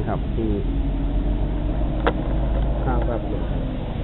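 Steady low rumble of a vehicle engine, easing a little about three seconds in, with brief snatches of voices and one short sharp click about two seconds in.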